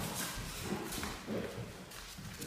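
Footsteps walking across a bare, debris-covered floor: a few uneven steps.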